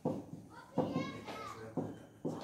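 Children's voices talking in the background, in short bursts.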